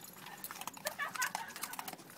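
Cavalier King Charles spaniels crunching dog biscuits: a quick run of sharp crunching clicks as they bite down on the hard treats.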